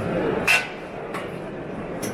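Steel door of a Teplodar Kupper PRO 22 solid-fuel boiler being shut: one short metallic knock about half a second in, then a lighter click.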